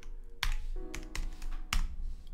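Typing on a computer keyboard: a run of irregular keystroke clicks, the sharpest about half a second in and near the end.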